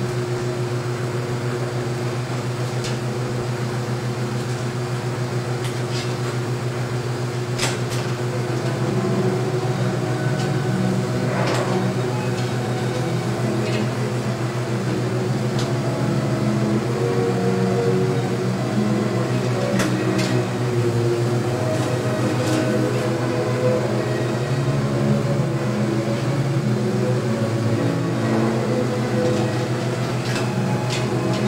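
Steady hum of running projection-booth equipment, with a few sharp clicks and knocks as 35mm film reels are handled at the rewind bench. From about eight seconds in, a fainter shifting sound joins the hum.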